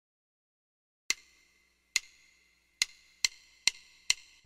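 Count-in clicks for a 140 bpm jazz tune: after about a second of silence, five sharp wooden clicks, the first three two beats apart and the last two on consecutive beats.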